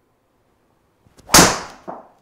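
A golf driver striking a ball full swing: one loud, sharp crack about 1.3 seconds in, then a softer knock near the end as the ball hits the simulator screen.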